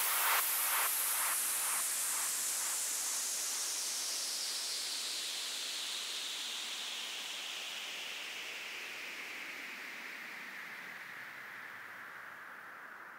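Synthesized white-noise sweep at the end of an electronic dance track, sliding slowly down in pitch and fading away. Faint repeating echoes of the last beat die out in the first few seconds.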